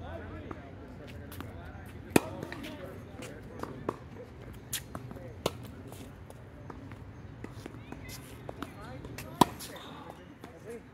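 Tennis rally: two loud, sharp racket-on-ball hits about seven seconds apart, the second just after nine seconds in, with fainter ball hits and bounces from farther off in between.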